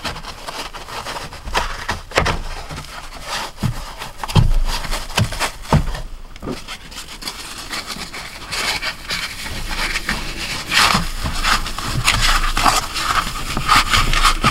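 Foam pool noodle being pushed and squeezed into the gap of a trailer's sliding window frame, then the window pane slid over against it: irregular rubbing and scraping with light knocks, busier in the second half.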